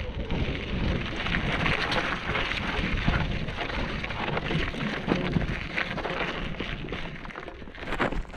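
Mountain bike tyres crunching and crackling over loose gravel on a steep climb, a dense, continuous stream of small clicks over a low rumble.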